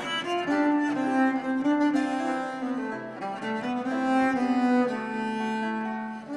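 Early baroque chamber music played on bowed strings, with held notes moving in steps.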